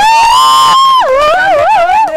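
A woman's loud, high-pitched celebratory shriek, held on one pitch for about a second and then wavering up and down.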